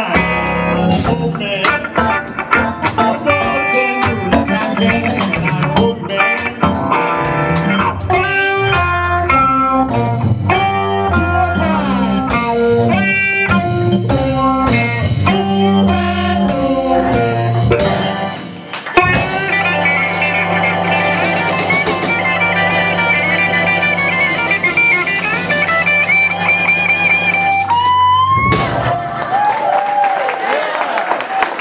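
Live blues band: electric guitar and drum kit with a sung lead vocal, playing a driving boogie. About nineteen seconds in the band hits a big chord and holds it, the guitar wavering on a high note, then ends it near the close of the song.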